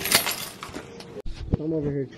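A ring of keys jingling and clinking against a granite countertop, a short bright clatter at the start.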